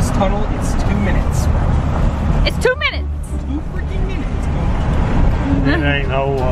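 Steady, loud low rumble of a car driving through a road tunnel, heard from inside the cabin, with brief voices about halfway through and near the end.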